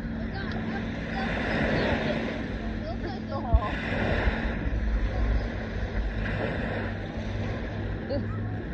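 Beach ambience: wind on the microphone and waves washing in, with distant voices and a low steady hum. One short thump a little after three seconds in.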